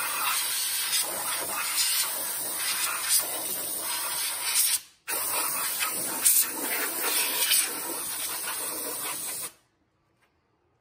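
Compressed-air blow gun hissing as it blows dust out of a Polaris RZR's CVT clutches. The air comes in two long blasts with a brief break about five seconds in, and cuts off just before the end.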